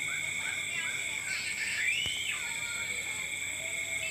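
Night-time insect chorus, crickets giving a steady high-pitched drone. Short calls repeat over it, and there is a single rising-then-falling call about two seconds in.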